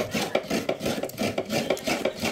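A coconut half being scraped by hand against the serrated blade of a stool-mounted coconut grater: a quick, steady run of rasping strokes, about five a second, as the white flesh is shredded into a bowl.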